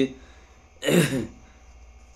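A man clears his throat once, about a second in: a short, rough sound that falls in pitch.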